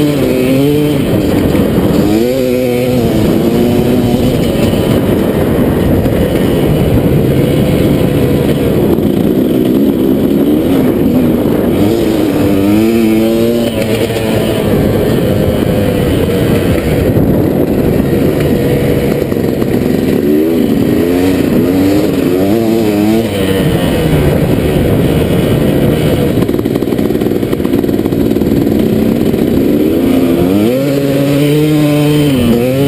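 2001 KTM 380 MXC single-cylinder two-stroke dirt bike engine running hard, heard from on board. Its pitch climbs and drops again and again as the rider accelerates and shifts, with several quick climbs about twenty seconds in.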